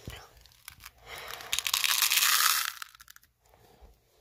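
M&M's Minis pouring from their tube into a small plastic cup: a dense rattle of many tiny candy-coated pieces hitting plastic and each other. It starts about a second in and lasts nearly two seconds.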